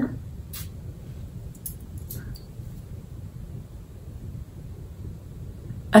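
A single short hiss of a perfume atomizer spraying, about half a second in, over a low steady room hum, with a few faint brief sounds a second or two later.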